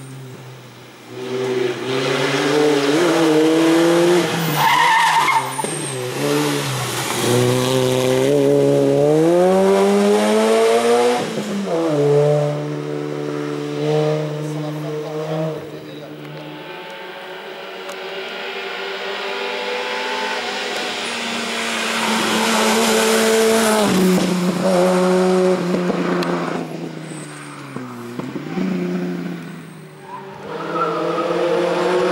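Racing car engine accelerating hard up a mountain hill-climb road, its pitch climbing through each gear and dropping sharply at every upshift. It is loud for much of the time, fades for a few seconds in the middle, then comes back loud as a car approaches again.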